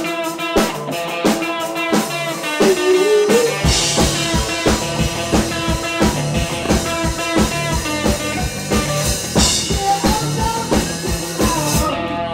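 Live new-wave punk band playing an instrumental passage: a fast steady drum beat with guitar and synth keyboard, the bass and kick filling in fully about four seconds in.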